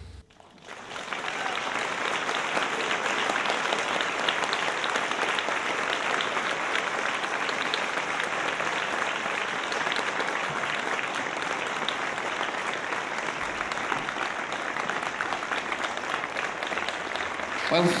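Audience applauding. The clapping begins about a second in, after a brief hush, and carries on steadily until a man starts speaking near the end.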